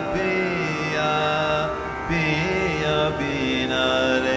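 Northern Indian classical vocal music: long held sung notes that slide slowly between pitches over a steady drone.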